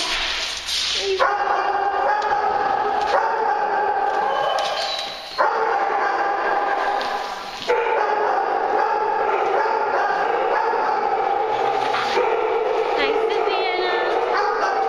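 Many dogs barking and yipping together in a continuous din, with a few higher yips near the end.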